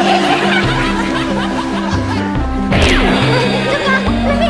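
Men laughing and snickering over an upbeat background music track with a steady bass line, with a sudden noisy swish about three quarters of the way through.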